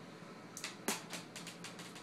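Light plastic clicking of a Lego minifigure blaster being worked and fired, with one sharper click a little under a second in among several smaller ones.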